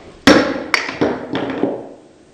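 Small amber glass dropper bottle dropped, hitting a hard surface with a sharp knock and then bouncing and clattering several more times, fading out. It does not break.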